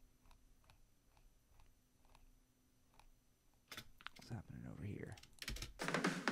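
Faint, evenly spaced computer mouse and keyboard clicks, about three a second, during snare hit-point editing in a DAW. Near the end a recorded snare drum hit starts playing back from the session.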